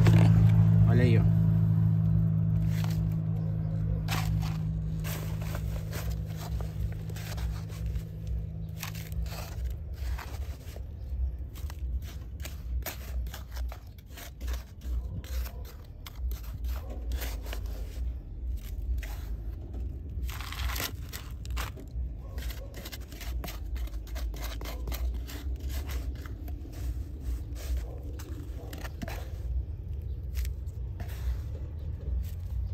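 Small plastic trowel digging into and scooping coarse building sand, giving repeated short, irregular gritty scrapes and crunches as sand is dug and tipped into a plastic pot. A vehicle engine hum fades out over the first ten seconds.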